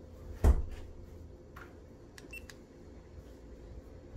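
Handling noise from a GoPro Hero 8 held in the hand: one sharp knock about half a second in, then a few faint clicks and taps.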